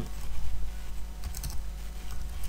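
Computer keyboard keys being typed as a password is entered, a few short clicks with a quick cluster past the middle.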